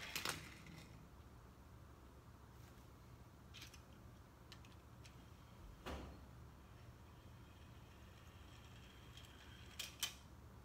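Mostly near silence, broken by small toy cars rolling down a low wooden board ramp onto a wooden floor: a short clatter right at the start, a single knock about six seconds in, and a couple of sharp clicks just before the end.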